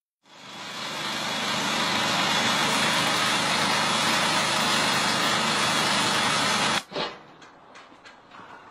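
Manhole ring-cutting machine running, its spinning toothed wheel milling the asphalt in a circle around a manhole cover: a loud, steady grinding engine noise that builds over the first second or two and cuts off suddenly near the end.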